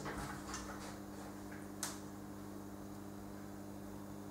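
A cat pawing at an aluminium window frame and sill, with a few light scrapes and clicks in the first half-second and one sharp click a little before the middle, over a steady low hum.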